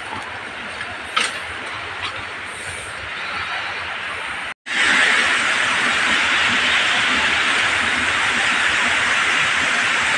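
A faint steady rush with a few light crackles, as of twigs and brush underfoot, for the first few seconds; then, after an abrupt cut, the loud, steady rushing of a waterfall.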